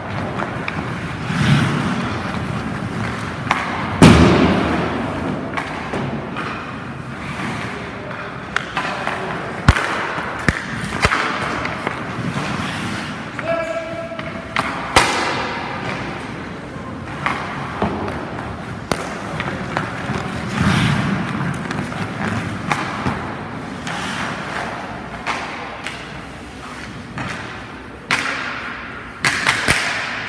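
Ice hockey pucks cracking off sticks, goalie pads and the boards as shots are taken on a goalie, over the scrape of skate blades on the ice. The knocks come irregularly, the loudest about four seconds in and a quick run of them near the end.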